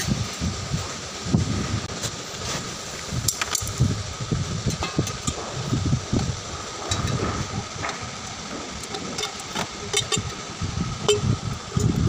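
Scattered clicks and light knocks of a steel exhaust pipe section being handled, over a steady workshop hum with a faint high tone.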